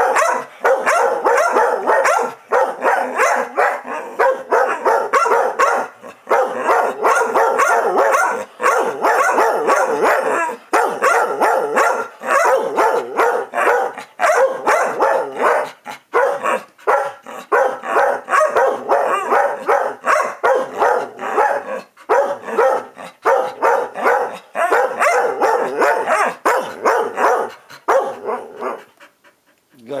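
Two dogs barking back and forth at each other in long, nearly unbroken runs, a playful squabble; the barking stops shortly before the end.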